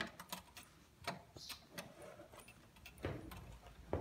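Light, irregular clicking from an old Singer sewing machine converted for al aire embroidery, its mechanism turned slowly by hand.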